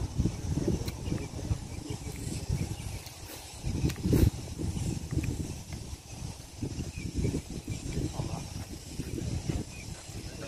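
Wind buffeting the microphone in uneven gusts of low rumble, with one sharp knock about four seconds in.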